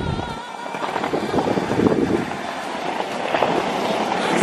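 City street ambience picked up by a handheld camera while walking, with handling noise as the camera is moved.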